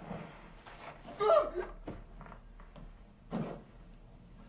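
A wounded man on the floor groaning in pain from a fresh shotgun wound: two short groans, about a second in and again past three seconds, with a few faint knocks between.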